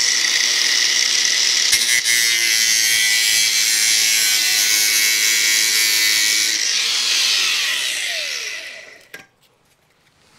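Cordless angle grinder running steadily as its disc cuts through a small plastic plant pot around a root ball, then switched off at about six and a half seconds and spinning down with a falling whine. A click follows near the end.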